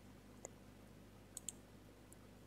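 Near silence: quiet room tone with three faint clicks, one about half a second in and two close together later on.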